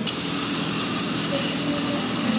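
A steady, even hiss with no rises or breaks.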